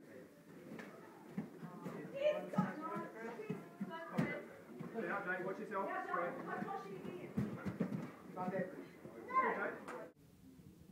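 Indistinct voices of people talking, with a sharp knock about four seconds in.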